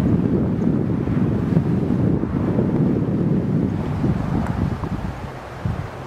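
Wind buffeting the camera microphone: a loud, gusty low rumble that eases a little near the end.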